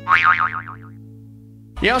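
The last chord of a fiddle-and-guitar song rings out and fades. Near the start, a short comic 'boing' sound effect with a fast-wobbling pitch plays for under a second. Near the end a man starts shouting over music.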